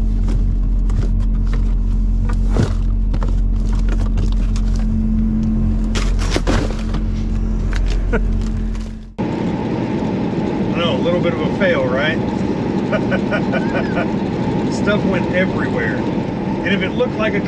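Peterbilt 389 truck engine idling with a steady low hum while snack packages are handled and rustled in the cab's storage compartment, with scattered sharp crinkles and knocks. About nine seconds in, the sound cuts to louder cab road noise from the moving truck, with a man's voice.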